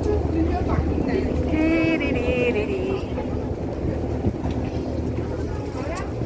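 Passenger ferry's engine running with a steady low hum under the chatter of a crowd, with a high-pitched voice standing out for a moment about two seconds in.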